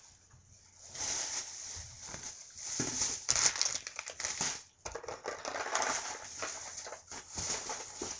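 Plastic shopping bag rustling and crinkling as items are handled, in irregular bursts that start about a second in and are loudest around the middle.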